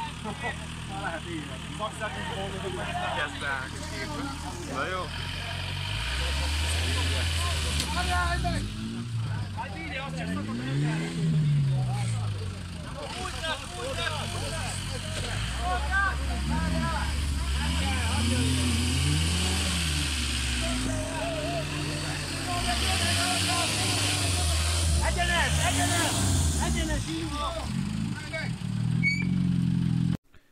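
A car engine revved up and down again and again under load from about six seconds in, while a car is hauled out of a ditch on a tow rope, with a crowd talking over it.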